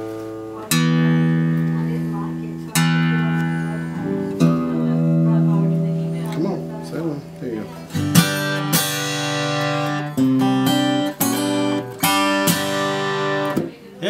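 Acoustic guitar, freshly fitted with new strings that have just been stretched, strummed in a series of chords, each left to ring, with firmer strums in the second half.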